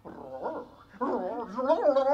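A man's voice doing a soft, whimpering imitation of a roar, a wavering cry that rises and falls in pitch, growing louder about a second in.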